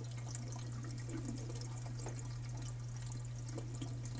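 Water trickling and dripping through a hang-on-back aquarium overflow as it drains down after its return pump has been switched off, with small irregular drips over a steady low hum.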